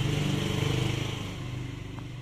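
A vehicle engine's low hum, swelling and then fading away after about a second and a half.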